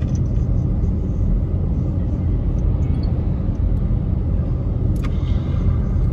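Steady low rumble of car cabin noise, the engine and road noise of a car heard from inside, with one sharp click about five seconds in.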